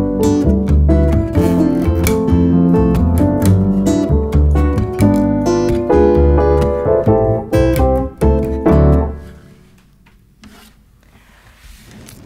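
Acoustic guitar and upright piano playing the instrumental closing bars of a song, with a strong low end. The music ends about nine seconds in.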